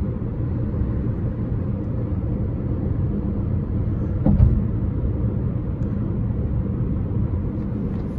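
Steady low drone of engine and road noise inside the cabin of a 2020 Jeep Compass 2.0 Flex, its engine held in fourth gear on a steep descent to brake the car instead of using the brakes. A brief thump comes about four seconds in.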